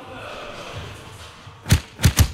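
A low rushing hiss, then near the end a single heavy, sudden drum hit: the first beat of a music track coming in.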